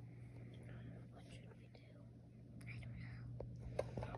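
A child whispering faintly, with a few light clicks from small plastic toy figures being handled, over a low steady hum.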